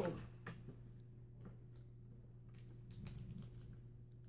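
Faint crinkling and small clicks of plastic Warheads candy wrappers being picked at and opened by hand, over a steady low hum.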